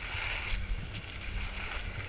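Skis sliding and scraping over packed snow, loudest in the first half-second, over a low rumble of wind buffeting the microphone.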